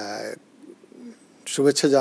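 Talk-show speech: a short spoken sound at the start, a brief pause with a faint low murmur, then talking resumes about a second and a half in.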